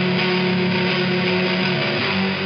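Electric guitar through a fuzz-distorted amp, one chord held and sustaining steadily, moving to a new chord near the end.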